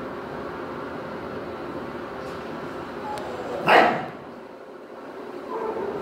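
A dog barks once, loud and short, a little past halfway, then a quieter, shorter call comes near the end, over a steady background hum.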